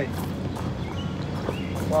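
Steady outdoor background noise with a few faint, light clicks and crunches scattered through it.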